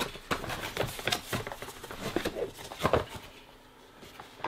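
A cardboard product box being opened by hand and a smart bedside lamp pulled out of it: a run of rustles, scrapes and light knocks that dies down near the end.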